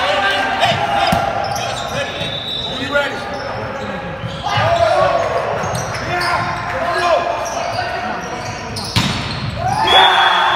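Volleyball rally in a large gymnasium: the ball struck several times, the sharpest hit just before the end, over players' and spectators' shouts.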